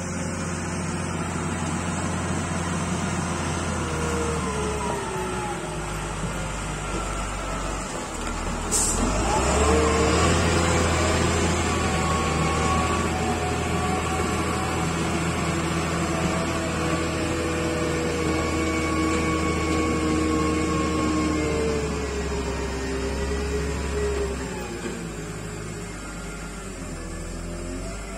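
Wheel loader's diesel engine running under load. About nine seconds in it revs up and holds a higher pitch with a whine, then eases back down near the end.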